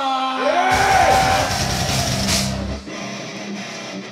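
Heavy metal band playing live: a vocal yell over a loud burst of distorted guitar, bass and drums. The burst stops after about three seconds, leaving a quieter ringing note.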